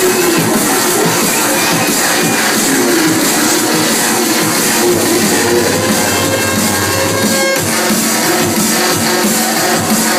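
Drum and bass music from a DJ set, played loud over a club sound system. A sustained deep bass note comes in about halfway through and cuts off suddenly about two and a half seconds later, and the beat carries on.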